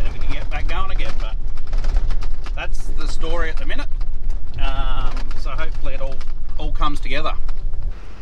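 A man talking inside a moving car's cabin, over a steady low rumble of engine and road noise.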